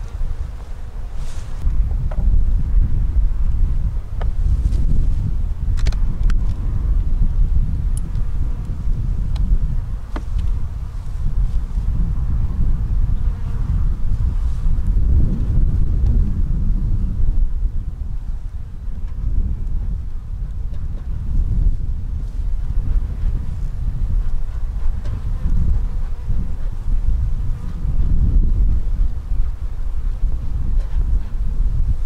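Honeybees buzzing around an opened beehive as its wooden boxes and frames are lifted off, with a few light knocks and clicks of the woodwork in the first ten seconds. A loud, gusting low rumble of wind on the microphone runs under it all.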